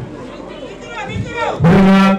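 A man's voice over a microphone, quiet at first, then rising into a loud, long held chanted note about a second and a half in.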